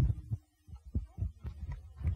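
A series of dull, low thumps and knocks picked up close to the stage microphones. The strongest comes right at the start, followed by irregular softer bumps every quarter to half second.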